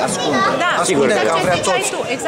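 Speech only: a man talking in Romanian, with other voices chattering behind him.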